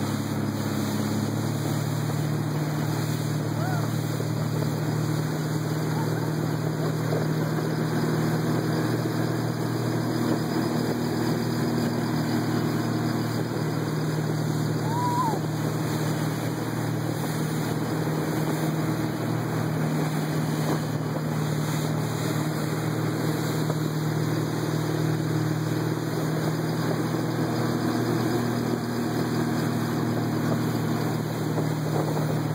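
Motorboat engine running steadily at speed, with wind and the rush of water from the wake.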